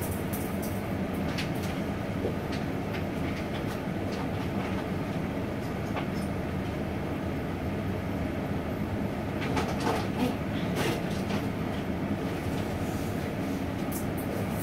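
Steady rumbling hiss of a lit gas stove burner heating a pot, with a few light clicks and clatters, a cluster of them about ten seconds in.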